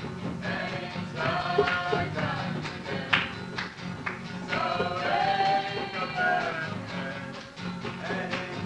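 A woman singing a song in a high voice, the notes held and bending, with a few sharp knocks in the background.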